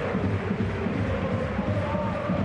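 Football stadium crowd noise: a steady din of a large crowd, with fans chanting in long held notes.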